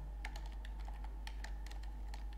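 Typing on a computer keyboard: a quick, irregular run of key clicks, over a steady low hum.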